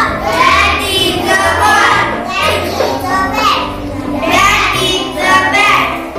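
A young girl's voice reading short sentences aloud in a sing-song chant, with background music underneath.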